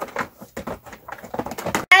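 Hard plastic toy robots and packaging being handled: a run of irregular light clicks, taps and rustles.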